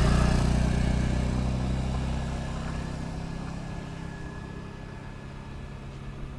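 Small motor scooter engine passing close by and riding away, its steady hum fading over several seconds.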